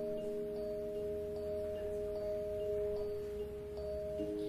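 Nord Electro 4 stage keyboard holding a sustained chord, its notes steady throughout, with faint soft ticks repeating about two or three times a second.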